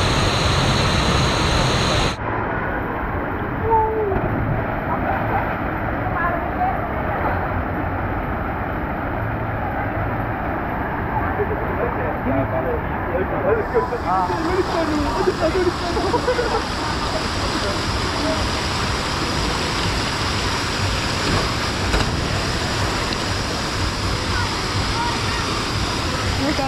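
Steady rush of water: for the first two seconds, the pumped sheet of water on a FlowRider surf simulator. Then, after a sudden cut, a quieter, steady rush of water around a pool with fountain jets, with faint distant voices.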